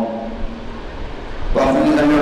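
A man's chanted Arabic recitation pauses for about a second and a half, leaving only background noise, then resumes on a long held note near the end.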